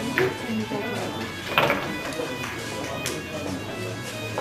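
Pool balls being struck in an eight-ball game: a sharp click as the cue ball is hit, then further clicks as balls collide, the loudest about a second and a half in. They sound over background music and low voices.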